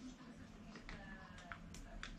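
Faint clicks of small metal parts, steering-link ball ends and screws, being handled, with a few sharp ticks in the second half. A brief faint high tone sounds about halfway through.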